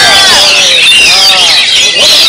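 Several caged Oriental magpie-robins (kacer) singing at once in a loud, dense chorus of overlapping sliding, rising-and-falling notes.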